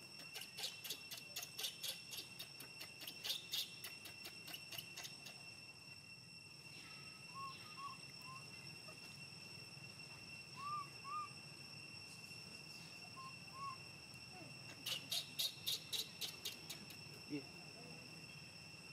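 Insects drone steadily in high, even tones, with bursts of rapid clicking in the first five seconds and again near the end. A few short, faint chirping calls come in the middle.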